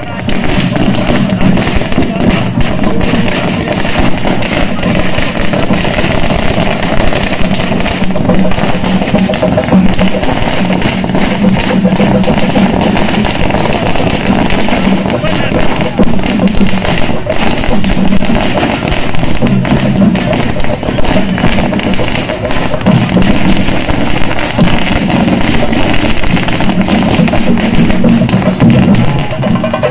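Firecrackers bursting on the road in rapid succession: a loud, dense, continuous rattle of pops, mixed with crowd voices and music.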